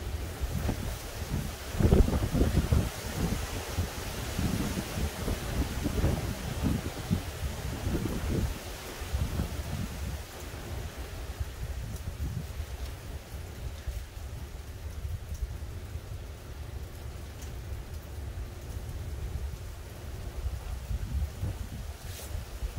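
Hurricane Ian's wind gusting through the trees over a steady hiss, with low rumbling surges where gusts hit the microphone. The strongest gust comes about two seconds in, and the wind eases in the second half.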